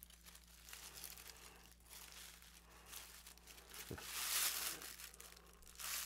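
Wrapping paper crinkling and tearing as a small gift is unwrapped by hand, loudest about four seconds in.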